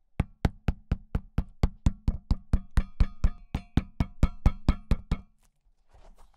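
Rapid, even tapping, about four strikes a second, as a freshly glued Vibram rubber sole patch is hammered down onto a running shoe's outsole to set the bond; the tapping stops a little after five seconds in.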